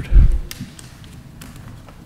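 A loud, deep thump on a desk microphone just after the start, then a few faint taps over low room tone.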